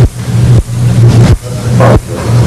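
A muffled, distorted voice over a loud low hum, coming in stretches under a second long with brief drops between them; no words can be made out.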